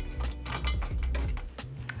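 Screwdriver turning a CPU cooler's mounting screws down into the bracket lock nuts: a run of small, irregular metallic clicks, over quiet background music.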